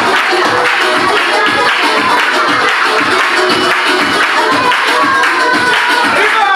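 Loud dance music with a quick, steady beat, with hand claps along to the rhythm.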